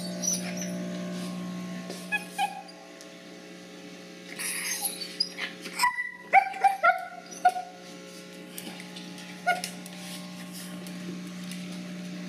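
A dog whimpering and giving short, high yips, with a run of them about halfway through, over a steady low hum.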